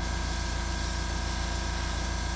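Gravity-feed airbrush spraying a white base coat: a steady hiss of air and paint. Under it runs a steady electric motor hum.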